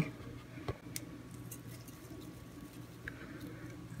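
Seasoning being shaken from a plastic shaker bottle into a blender jar: a few faint taps and patter, over a faint steady hum.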